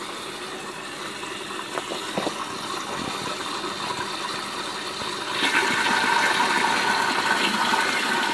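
Water running into a plastic hydroponic reservoir tank as the float is pushed down by hand, which triggers the automatic top-up. The flow grows louder about five seconds in, and a steady whine joins it.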